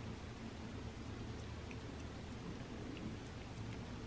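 A cat licking soft pureed chicken food from a paper plate: faint, irregular small wet clicks over a steady low hum.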